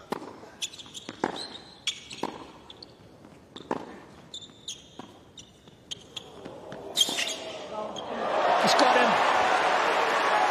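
Tennis rally on a hard court: rackets strike the ball about once a second, with short high squeaks between hits and a sharp loud shot about seven seconds in. From about eight seconds in, crowd applause swells and stays loud.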